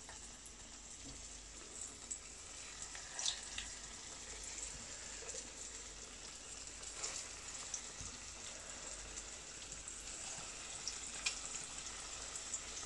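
Panko-coated croquettes frying in a pan of hot oil: a steady, faint sizzle with a few short crackles.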